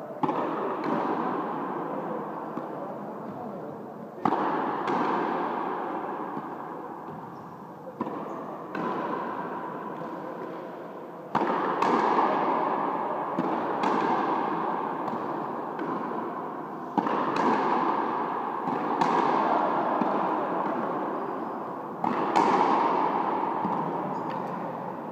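Frontenis rally: sharp cracks of rackets striking the rubber ball and the ball hitting the frontón's concrete wall, several times at irregular intervals of a few seconds. Each crack rings on in a long echo in the enclosed hall.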